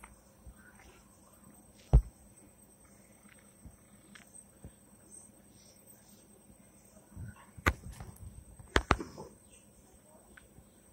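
Handling noise on a handheld phone's microphone: a sharp knock about two seconds in, then a cluster of clicks and rustles about seven to nine seconds in, over a faint steady high-pitched tone.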